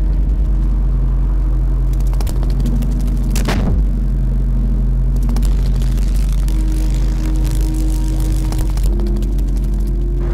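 Trailer score and sound design: a deep, steady rumble under sustained low drone tones that shift now and then, with a falling whoosh about three and a half seconds in.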